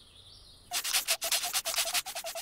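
Stick scraped rapidly back and forth against another stick in an attempt to light a fire by friction, a quick run of short scraping strokes, about eight a second, starting under a second in. The sticks are plastic.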